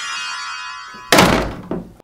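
A shimmering, ringing tone fades away. About a second in, a door shuts with a single heavy thunk that dies away over half a second.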